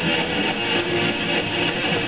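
Metal band playing live: electric guitars strumming over the full band.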